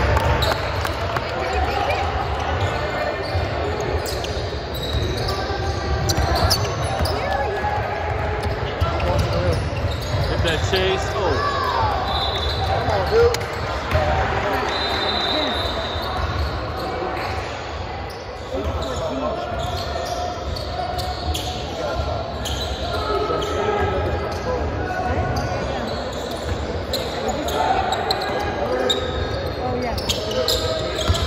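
Basketball bouncing on a hardwood gym floor during play, repeated knocks that echo in the large hall, over indistinct voices of players and spectators.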